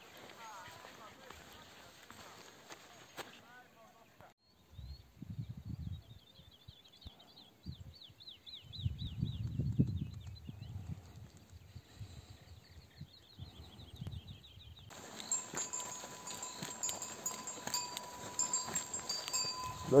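Outdoor ambience in an open meadow: low rumbling gusts of wind on the microphone, faint high chirping notes in the middle, and a steady thin ringing tone in the last few seconds.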